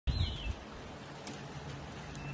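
A bird gives a short whistled call that falls in pitch at the very start, over a few low knocks from the phone being handled as recording begins. A steady outdoor background hush follows.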